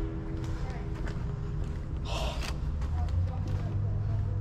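Low, steady rumble inside a narrow storm drain pipe, with one short breath about two seconds in.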